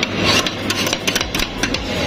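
Two metal spatulas scraping and chopping ice cream with cookie pieces on the steel cold plate of a rolled-ice-cream counter: quick, repeated scrapes and taps of metal on frozen metal, over a low steady hum.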